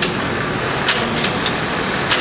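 Industrial sewing machines in a garment workshop: a steady mechanical hum with sharp clicks, one at the start and several about a second in.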